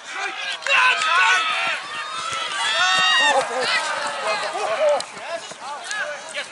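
Several people shouting and yelling at once, loud and overlapping, as a ball carrier breaks through the defence and is tackled.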